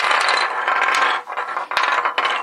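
3D-printed nylon puzzle pieces clattering and scraping against one another and a hard tabletop as they are pulled apart and spread out by hand, with a sharp click at the start and another near the end.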